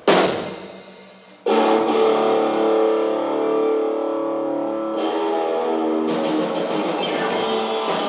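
Rock band playing live, electric guitar prominent. A loud chord hits at the start and rings out for over a second. Then the band comes in with held chords from about a second and a half in, and the drums get busier with cymbals from about six seconds in.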